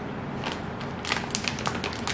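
Crinkly plastic snack packet being handled and torn open by hand: scattered sharp crackles about half a second in, growing into a dense run of crinkling after a second.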